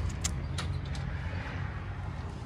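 Footsteps stepping through a front doorway onto the floor inside, a couple of light taps near the start, over a steady low rumble.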